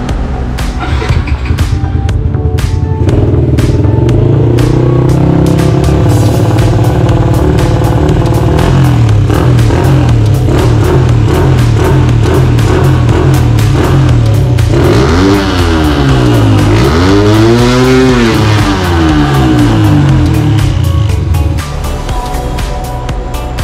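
Yamaha LC135 single-cylinder four-stroke engine, built up to a 62 mm bore, running after being started about three seconds in, with repeated short throttle blips and then a longer rev up and back down near the end, over background music.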